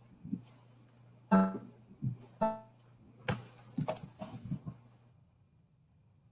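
Two short pitched notes about a second apart, with a keyboard-like tone, followed by a run of soft clicks and knocks.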